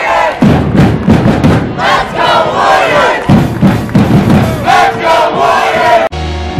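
A crowd of students in the stands shouting and chanting together, with many voices yelling at once.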